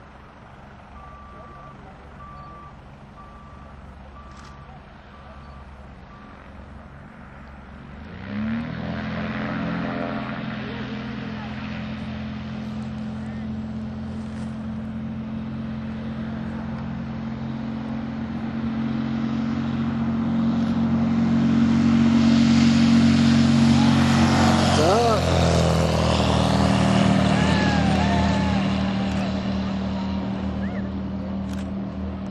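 Light aircraft's piston engine coming up to full takeoff power about eight seconds in, a sudden rise to a steady, even drone. It grows louder as the plane accelerates down the runway and climbs out toward the listener, loudest a few seconds before the end.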